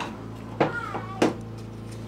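Two light metallic clicks a little over half a second apart as a tight-fitting part is worked loose inside a Reliant 600cc engine block, over a steady low hum.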